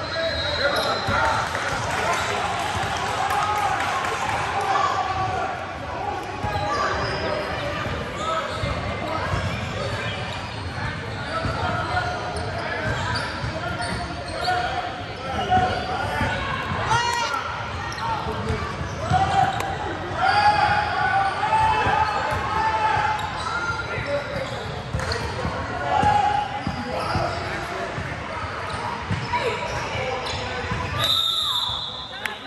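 A basketball bouncing on a hardwood gym floor, with a steady background of spectators talking, echoing in a large hall.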